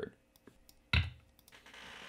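Several short computer mouse clicks, with one louder click about a second in.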